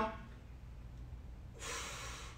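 One audible breath, about one and a half seconds in, from a man under effort as he holds a deep squat while pressing a stick upward. A low steady room hum sits underneath.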